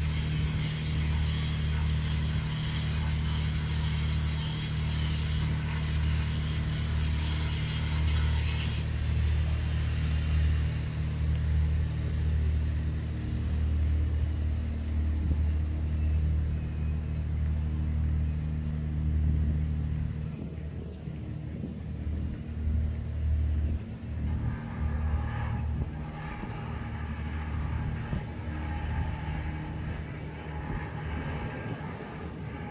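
A large engine running at a steady speed, a deep steady hum, under a high hiss that stops about nine seconds in. Near the end a set of higher tones joins the hum.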